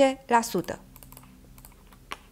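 Computer keyboard keys tapped several times in quick, light clicks, much quieter than the voice.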